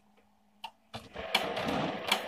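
HP LaserJet Pro 100 color MFP M175nw's toner carousel drive starting up about a second in: a mechanical whir with clicks as the printer rotates its cartridge carousel to the selected toner cartridge. A single click comes just before it.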